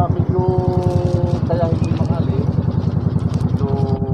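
Motorcycle engine idling close by with a fast, even pulse, fading just after the end. A man's voice with drawn-out vowels sounds over it.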